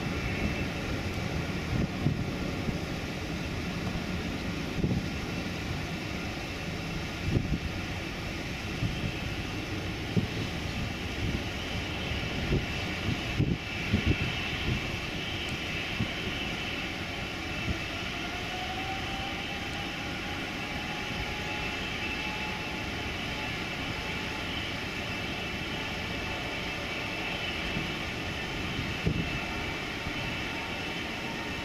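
Jet engines of an Air France Boeing 777-200ER running with a steady high whine. About halfway through, a tone rises gradually and then holds as the engines spool up for takeoff. Irregular low thumps sit underneath.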